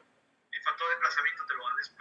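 Speech: a person talking, starting about half a second in after a brief silence.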